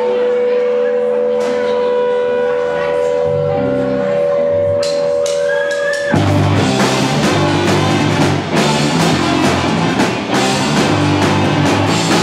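Live ska-punk band starting a song: a steady held tone, low bass notes joining about three seconds in, then the full band with drums, guitars and a horn section crashing in about six seconds in.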